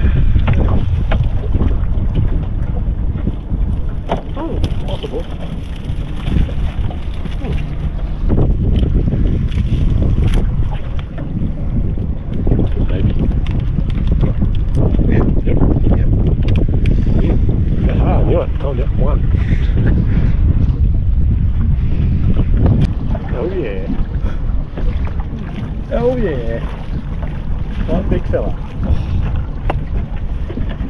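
Wind buffeting an action camera's microphone, a loud, steady low rumble, broken by scattered knocks and rattles from the crab pots being handled on the boat.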